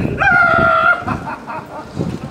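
A rooster crowing: one long held call with a steady pitch that starts about a fifth of a second in and lasts under a second, falling away at the end.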